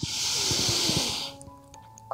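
A long, audible in-breath lasting about a second and a half, taken as the arms are raised overhead in a seated yoga stretch, with soft background music underneath.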